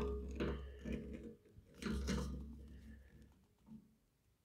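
Faint handling noise: a few light clicks and knocks over a low rumble as a flexible-neck light is worked into the bung hole of a steel drum, the strongest knock about two seconds in, dying away before the end.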